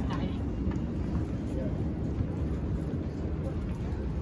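Steady low rumble of background noise with faint, indistinct voices of people talking.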